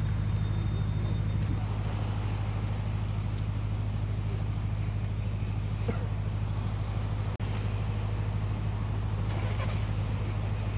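A diesel truck engine idling with a steady low drone.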